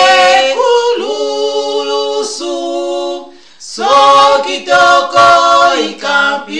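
Two women singing a Christian worship song a cappella, with no instruments, holding long sung notes. The singing breaks off for about half a second a little past three seconds in, then comes back in.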